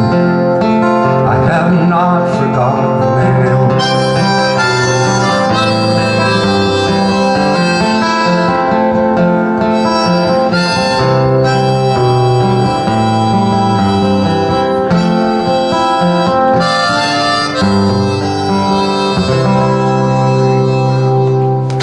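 Harmonica played in a neck rack over a strummed acoustic guitar: an instrumental harmonica break of held and changing notes in a folk song.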